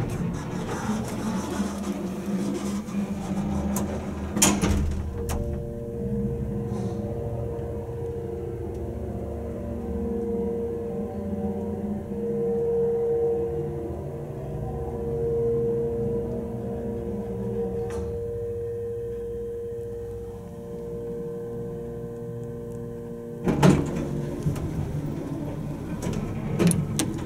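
Hydraulic elevator's pump motor running as the car travels up, a steady hum with a constant whine. It starts about five seconds in and stops with a knock near the end.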